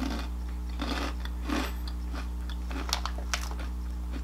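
A person chewing barbecue-flavoured Japanese Cheetos with the mouth closed: a run of soft munches, the snack being softer than American Cheetos. Two sharp clicks come about three seconds in, over a steady low hum.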